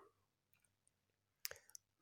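Near silence, broken by one short sharp click about one and a half seconds in, followed by a couple of fainter ticks.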